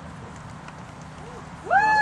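Quiet outdoor background, then near the end a loud, short, high-pitched call that rises and falls in pitch.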